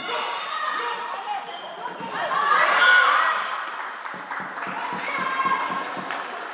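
Sounds of play on an indoor floorball court: players' shouts and calls over the sounds of play on the court floor, in a large echoing sports hall. The loudest call comes about three seconds in.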